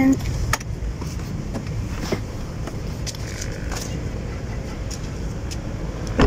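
A few sharp clicks and knocks as a child climbs out of a car's open rear door, over a steady low rumble of road traffic.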